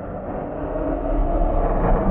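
Intro animation sound effect: a low, rumbling swell that grows steadily louder, building up toward a shatter effect.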